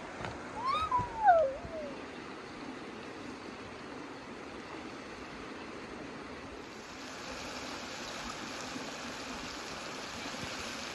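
A short wavering call, falling in pitch, about a second in, over a steady rush of flowing stream water. From about seven seconds a brighter hiss joins as beef cutlets sizzle in hot oil in a cast-iron kazan.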